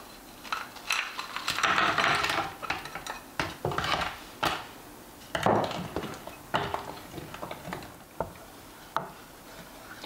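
Wooden spoon scraping and knocking in a copper saucepan as frozen strawberries are added to the hot rhubarb and sugar syrup: an irregular series of short clicks, knocks and scrapes, busiest in the first half.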